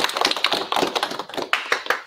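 A small group of about ten people applauding, a dense patter of hand claps that stops abruptly at the end.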